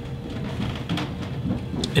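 Electric potter's wheel spinning while wet clay is smoothed by hand at the rim of a thrown mug. It is a low, steady running sound with a faint wavering hum over it.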